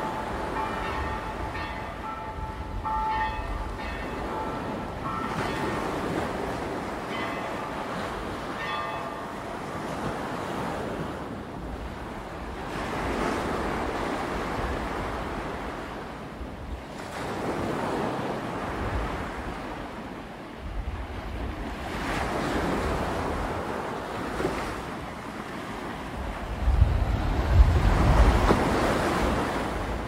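Surf breaking and washing up a black volcanic sand beach, swelling and falling back every few seconds. Near the end, wind buffets the microphone with a loud low rumble.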